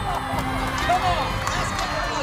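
Mostly speech: short excited spoken exclamations, one after another.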